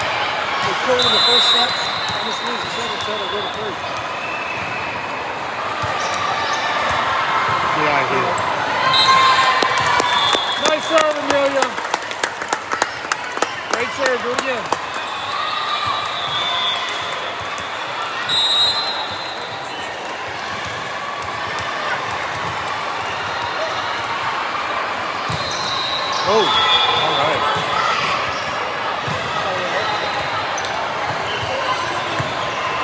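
A volleyball bounced and struck on a hardwood gym court, with short high sneaker squeaks on the floor, over the voices of players and spectators; a quick run of sharp knocks comes about a third of the way in.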